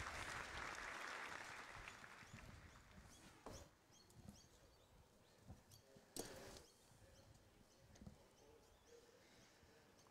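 Near silence: faint outdoor background that dies away over the first two seconds, with a few soft clicks later on.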